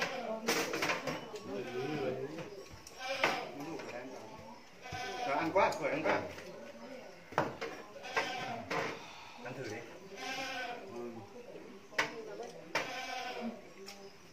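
Several people talking indistinctly around a meal, with a few sharp clicks of chopsticks and porcelain bowls.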